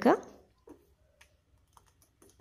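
A few faint clicks of a steel ladle knocking against the sides of a stainless steel pot while stirring carrot payasam.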